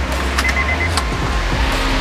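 A small electric motor in a car door whirring, the sound rising over the second half, with a couple of faint clicks, over background music with a steady bass.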